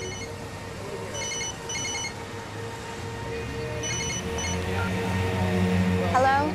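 Mobile phone ringtone: short high electronic trills in repeated bursts, two close together a second or two in and another around four seconds, over soft background music that swells toward the end.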